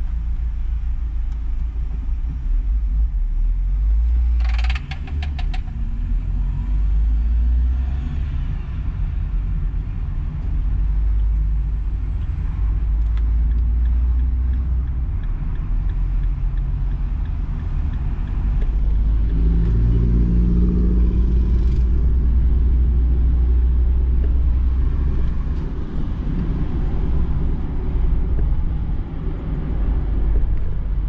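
Car driving, heard from inside the cabin: a steady, heavy low rumble of engine and road noise. A short rapid rattle of clicks comes about four and a half seconds in, and the engine note rises as the car accelerates about two-thirds of the way through.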